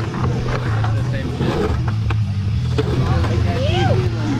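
Skateboard wheels rolling on a concrete bowl, a steady low rumble, with a few sharp clacks of the board. People's voices call out over it, one rising and falling shout near the end.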